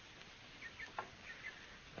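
A very faint pause: soft background hiss with a few small high chirps and a single light click about a second in.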